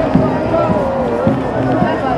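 Several voices singing together, held notes wavering in pitch, over a steady background of other voices.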